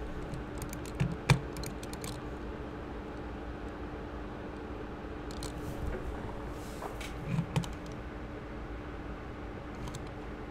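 A few short clicks of computer mouse and keyboard use, the louder ones about a second in and again past the middle, over a steady low hum.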